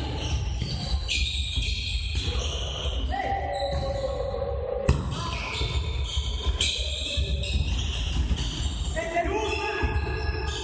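A futsal ball being kicked and bouncing on a sports-hall floor, ringing in the large hall, with players' voices calling out over the play. One sharp kick about five seconds in is the loudest sound.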